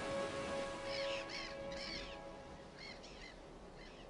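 A bird giving a series of short, harsh, crow-like calls, repeated several times and growing fainter, over soft sustained background music that fades out.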